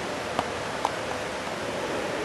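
Steady background hiss of a large room, with two faint short clicks about half a second apart.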